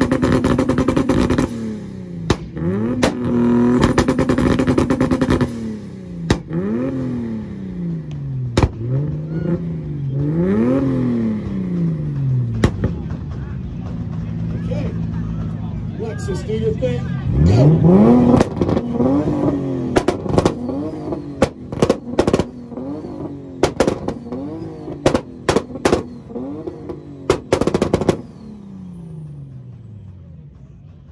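Two 2JZ straight-six engines, in a Lexus IS300 and a Mk4 Toyota Supra, revving against each other. They are held steady at high revs for the first few seconds, then blipped up and down again and again. Sharp exhaust backfire bangs come thick and fast in the second half, and the sound dies away near the end.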